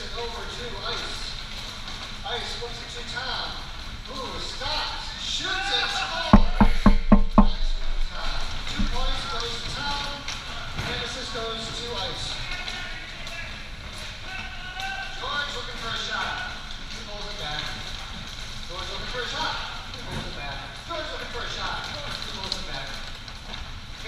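Several people talking and calling out, with a quick run of about eight loud knocks about six seconds in, the loudest thing heard.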